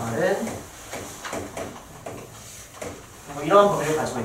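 Chalk tapping and scraping on a chalkboard as a short inequality is written and circled, a series of separate sharp clicks in the middle, with a man's voice briefly at the start and again near the end.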